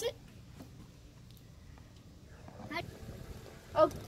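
Brief speech at the start and end, with faint low background noise in between and no distinct other sound.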